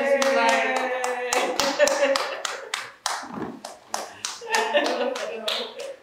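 Hands clapping in quick, uneven claps, several a second, with excited exclaiming voices over them near the start and again near the end.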